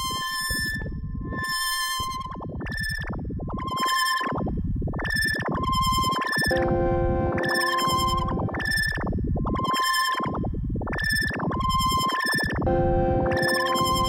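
Elektron Analog Four analog synthesizer playing a pulsing electronic pattern: short bright beeps over noisy low swells, about two a second. A held chord of lower steady tones comes in about six and a half seconds in, drops out, and returns near the end.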